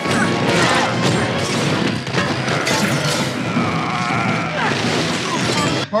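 Action-film battle soundtrack: dramatic score under a dense, continuous run of crashes and impacts.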